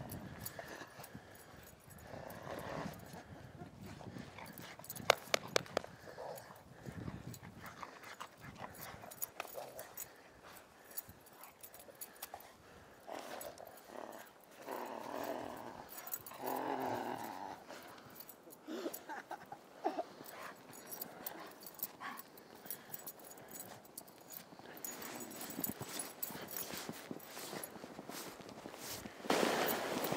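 A dog making short play noises while romping with a person, the longest and loudest about halfway through, among scattered sharp clicks.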